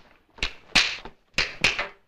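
Four sharp knocks in two quick pairs, like blows struck on wood.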